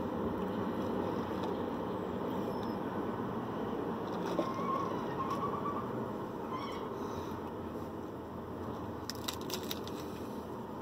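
Steady low rumble of vehicle noise heard from inside a truck cab with the window open. About nine seconds in comes a short run of crackling clicks as food is handled at the mouth.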